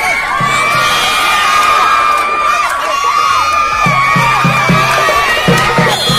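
Spectators shouting and cheering, many high voices at once. A low beat of background music, about four pulses a second, comes in near the end.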